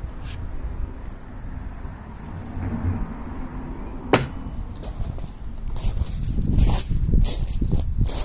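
Wooden sleeper offcuts handled against the sleeper, with one sharp wood knock about four seconds in, then irregular crunching steps on gravel over the last few seconds, over a steady low rumble.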